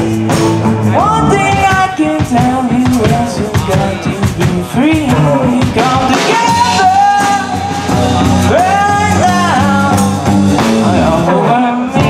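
Live band playing through PA speakers: a singer's voice over electric guitars and a drum kit.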